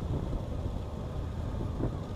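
Motorcycle cruising steadily, heard from the rider's seat: a low engine and road rumble mixed with wind noise on the microphone.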